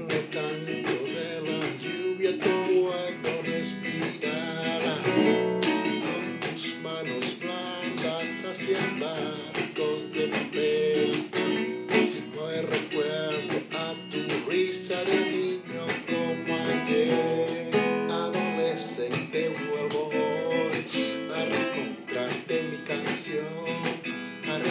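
Acoustic guitar strummed in a steady rhythm, playing the chords of a song in E minor.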